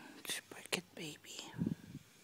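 Soft whispered speech, with a low bump near the end as the phone is moved against cloth.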